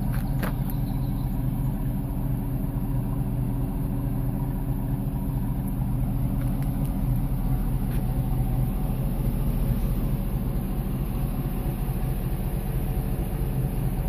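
2006 GMC Yukon Denali's 6.0-litre V8 idling steadily.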